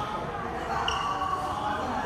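People's voices chatting in the echoing badminton hall between rallies, with a short high squeak about a second in.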